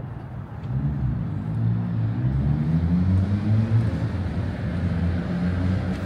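A motor vehicle's engine running close by, growing louder about a second in, rising a little in pitch and then holding steady.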